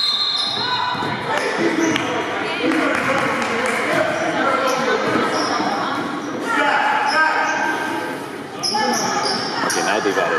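Youth basketball game in a gymnasium: a basketball bouncing on the hardwood floor amid children's and spectators' voices echoing in the hall, with a short referee's whistle right at the start.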